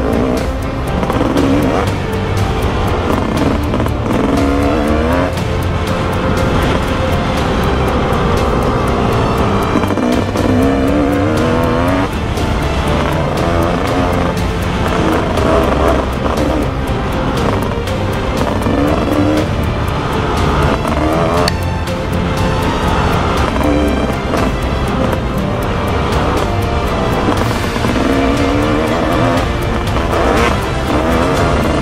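Dirt bike engine running hard, its pitch rising again and again every few seconds as the rider accelerates and shifts up.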